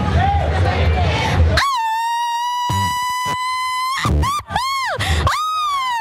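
A woman's grito, the Mexican festive yell, shouted into a microphone: a long, high held cry of about two seconds, then a few short rising-and-falling whoops, the last one sliding down. Crowd chatter comes before it.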